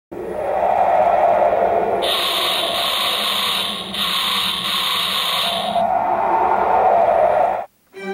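A loud rushing noise that swells and eases, with a sharp hiss laid over it from about two seconds in until nearly six seconds. It cuts off suddenly shortly before the end.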